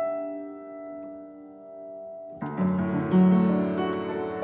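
Upright piano played slowly: a held chord fades away, then about two and a half seconds in a louder, fuller chord with deep bass notes comes in and more notes follow.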